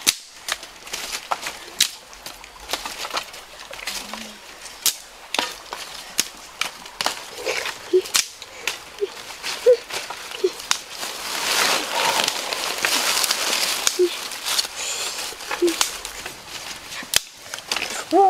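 Dry sticks and twigs snapping and cracking: many sharp snaps scattered throughout, with a longer stretch of rustling a little past the middle.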